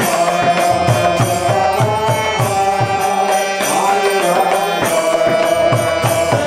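Devotional kirtan: voices chanting a mantra in a slowly moving melody over a hand drum keeping a steady beat, with cymbal-like strikes on top.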